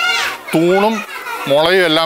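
A man speaking, with a high child's voice calling out briefly at the start, typical of children playing in the background.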